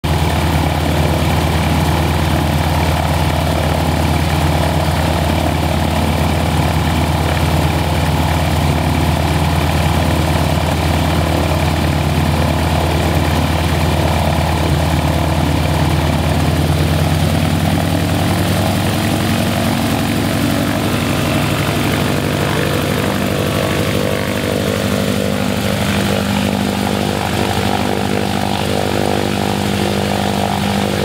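Grumman Ag Cat biplane's radial engine and propeller running at a steady idle on the ground. A little past halfway the engine speed picks up slightly and holds there as the plane begins to taxi.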